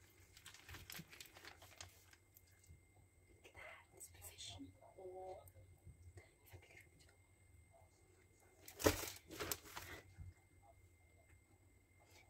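Faint rustling and handling noises, scattered and irregular, with the loudest cluster of rustles about nine seconds in.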